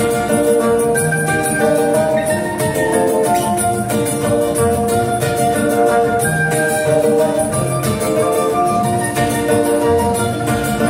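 Live acoustic band playing: fiddle, acoustic guitars and a trumpet in a steady, tuneful passage.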